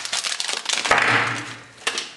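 Hands handling a metal fidget spinner in its cardboard packaging insert: a quick run of small clicks, then a brief scraping rustle of card about a second in and one sharp click near the end.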